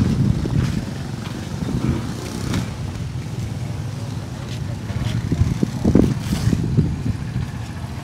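A small motorbike engine running nearby at low speed, with a few short knocks.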